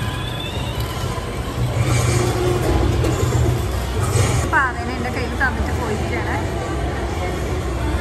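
People talking amid the steady background hum of a busy shopping mall.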